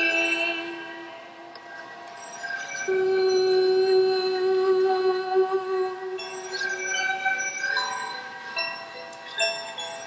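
Slow background music of long, sustained held notes: it fades down in the first couple of seconds, then a long low note is held for about four seconds while higher notes change above it.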